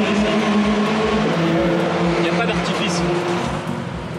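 Dallara Stradale's turbocharged 2.3-litre Ford EcoBoost four-cylinder idling steadily.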